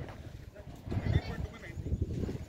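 Indistinct, faraway voices of people on the field, with low irregular rumbling from wind on the microphone; the voices are loudest about a second in.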